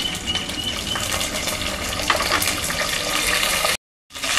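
Hot oil sizzling and crackling in a pan as green chillies, curry leaves and a bay leaf fry and a spoonful of ginger-garlic paste goes in; the sound cuts off suddenly just before the end.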